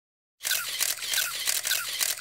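A rapid run of camera shutter clicks, like a crowd of press photographers shooting at once, starting about half a second in.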